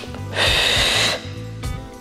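A woman's sharp breath through the mouth, a short hiss lasting under a second, paced to a Pilates abdominal exercise. Background music with a steady beat runs underneath.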